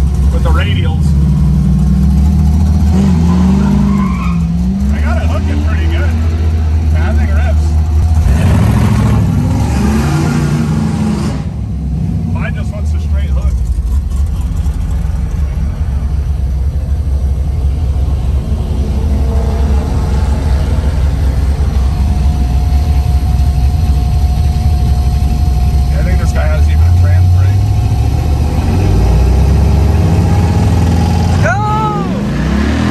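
Chevrolet Gen V L83 5.3-litre V8 in a 1972 Mazda RX-2 idling steadily, heard from inside the cabin. About eight seconds in, a louder rush of noise builds and cuts off sharply about three seconds later.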